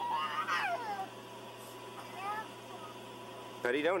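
A toddler's high, pitched cry falling in pitch during the first second, then a short, faint rising whimper about two seconds in. The cry is a young child's protest during rough play.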